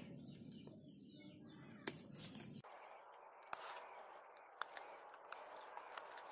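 Pruning shears snipping through cycad fronds at the base: about four short, sharp cuts spread through a quiet stretch.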